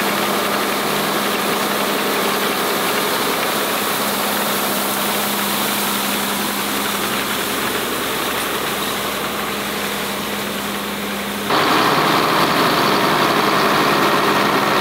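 John Deere farm tractor engine running steadily while pulling a rotary hay rake through cut hay, with one steady hum. About eleven seconds in it steps up louder.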